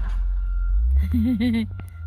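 Low engine rumble heard inside a car cabin, its pitch stepping up a little under a second in, with a short pitched vocal sound about a second in.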